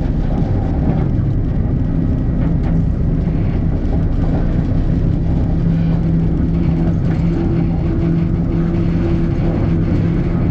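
Locomotive running along the track, heard from its side: a continuous rumble with a steady low engine tone that grows stronger about halfway through.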